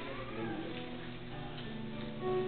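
Instrumental background music with steady held notes.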